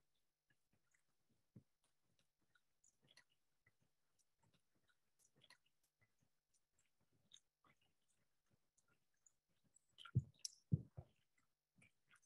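Quiet playback of an outdoor field recording: sparse faint clicks and ticks, then a few louder low thumps about ten seconds in. The recordist takes the pattern for water drops falling from the trees onto the microphone, with a click that could be digital noise.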